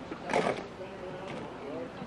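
Indistinct voices of people at the water's edge, with a short noisy burst about half a second in.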